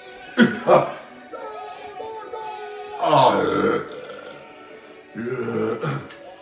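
Music plays in the background, while a person close to the microphone makes loud, short throaty vocal noises: two sharp ones in the first second, a longer one about three seconds in, and another near the end.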